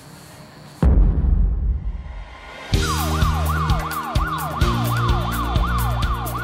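A deep boom about a second in, then, from near the middle, music with a heavy beat and bass under a police-siren yelp that sweeps up and down about three times a second.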